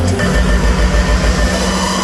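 Loud electronic dance music played through a festival sound system and recorded from within the crowd. A heavy bass drone lies under a sustained high tone, and a tone rises near the end, building toward a drop.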